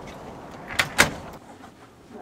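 A front door being shut: two sharp knocks about a quarter of a second apart, the second one louder.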